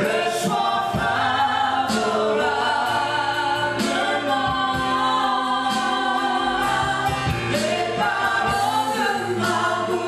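Live gospel worship song: voices singing long held notes into microphones over a band of electric guitar, keyboard and drums, with a slow beat of drum hits about every two seconds.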